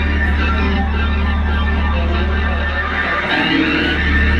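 Electric guitar picking scattered notes through a stage amplifier, over a loud steady low electrical hum from the PA that drops away briefly about three seconds in.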